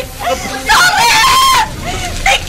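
A woman screaming and wailing in anguish, with one long, high cry held for about a second in the middle. It is a radio-drama performance of a mother's reaction to being told that her children are still inside the burning house.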